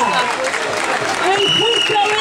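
Protest crowd chanting and shouting together over clapping, with a high steady whistle note sounding for about half a second near the end.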